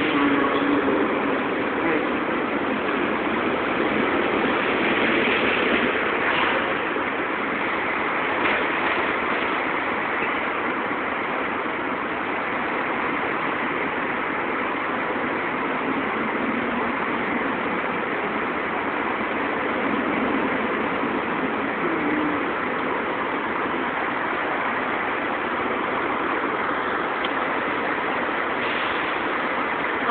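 Steady vehicle and road noise, an even, unbroken wash of traffic sound.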